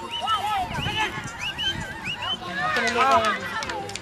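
Several voices shouting and calling out across a football pitch during play, overlapping, loudest about three seconds in.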